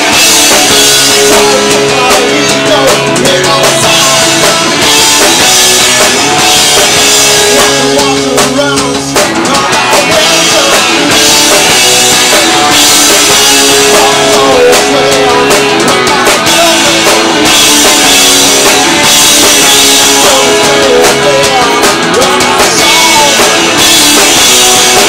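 A rock band playing live and loud: electric guitars, bass and a drum kit going without a stop, with a short drop in the music about nine seconds in.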